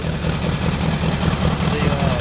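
1972 VW Baja Beetle's air-cooled flat-four engine idling with a steady, rapid pulse. The engine is still cold and the choke is still on, so it is running at a raised idle that will drop as it warms.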